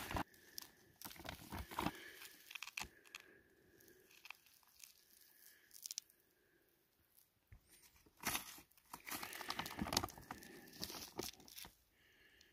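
Close rustling and scraping of a work glove handling and turning over a rock sample, in scratchy bursts during the first few seconds and again more loudly for a few seconds near the end, with a quieter stretch between.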